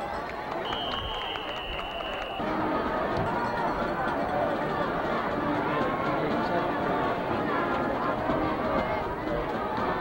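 A referee's whistle blows one steady, held note for nearly two seconds over the crowd in the stands. The crowd's babble of many voices carries on throughout and grows louder about two and a half seconds in.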